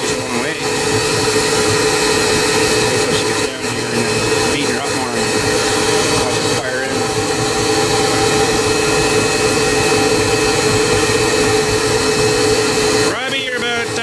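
AttiCat insulation blowing machine running with a steady motor tone and rushing air as its shredder slowly beats down a bale of pink fiberglass insulation in the hopper. The steady tone stops about a second before the end and the sound changes.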